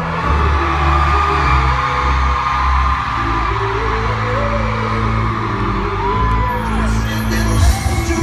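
Live pop music played loud through an arena PA, heard from among the audience: steady heavy bass under a male singer's voice. A high whoop from the crowd rises and falls about six seconds in.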